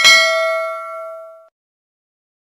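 A bell-ding sound effect of the notification bell being clicked: one struck chime that rings out and fades away over about a second and a half.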